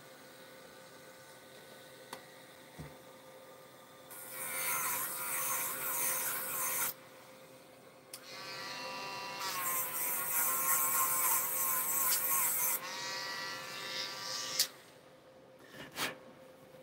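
A small handheld rotary tool of the Dremel type runs in two bursts, about three seconds and then about six seconds, with a high motor whine. The whine wavers and dips in pitch as the bit works a piece of card.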